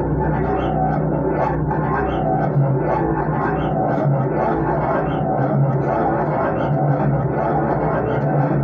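Improvised droning music on Warr guitar through effects: low sustained tones under a dense, shifting wash of notes, with no pause.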